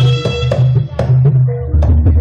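Live Javanese jaranan accompaniment: hand-drum (kendang) strokes over ringing gong-chime tones, the ringing fading early and the drum strokes coming quicker near the end.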